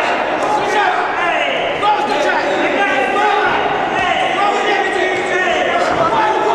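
Several men's voices calling and shouting over one another in a large, echoing sports hall, with a few dull thuds from the ring.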